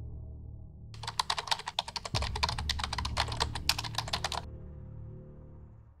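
A rapid run of sharp clicks starts about a second in and stops suddenly some three and a half seconds later, over a low, droning music bed.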